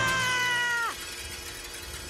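A cartoon character's high-pitched scream, held for just under a second, sliding slightly down and then dropping steeply in pitch as it cuts off.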